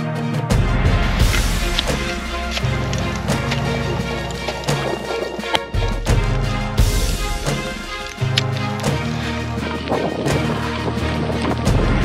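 Background music with a steady drum beat and a bass line that steps between notes.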